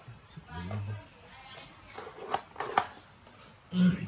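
Kitchen handling sounds: two sharp clicks about half a second apart, from a knife being worked while slicing tomato over a hotpot. A short murmur comes a little after the start, and a brief 'ừ' near the end.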